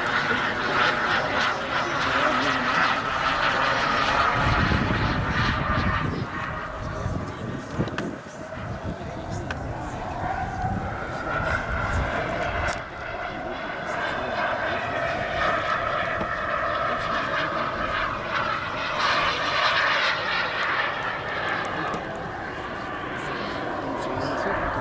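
Turbine engine of a giant-scale radio-controlled F-15 Eagle model jet in flight: a continuous jet whine and rush whose pitch wavers up and down as the model manoeuvres and passes, with a heavier rumble a few seconds in.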